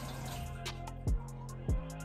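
Hip-hop backing beat with a steady bass line, kick drums and evenly spaced hi-hats. Under it, faint water runs from a tap as a beauty blender sponge is wetted.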